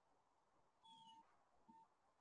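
Near silence, with two very faint short blips about a second in.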